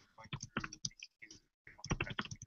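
Quiet, irregular clicking of a laptop keyboard being typed on, mixed with faint, low speech.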